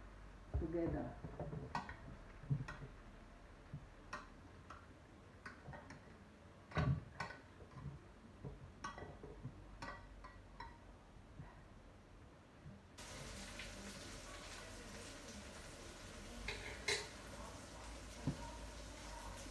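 Scattered clinks and knocks of kitchen utensils and a pan being handled, with a steady hiss coming in about two-thirds of the way through.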